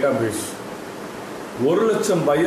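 A man speaking, breaking off for about a second in the middle, then speaking again; a faint steady hiss runs underneath.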